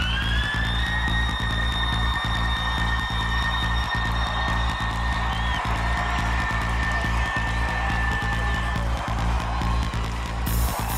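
Live electronic dance music with a heavy, steady bass. A high held note slides upward, levels off about a second in, and holds until near the end.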